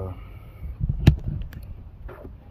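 Handling noise as the phone camera is moved: low rumbling thumps, a sharp knock about a second in, then a couple of light clicks.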